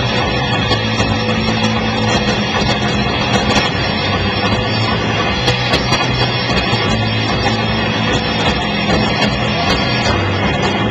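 Rock band playing live, loud and steady: electric guitar, bass and drums, with cymbal hits throughout.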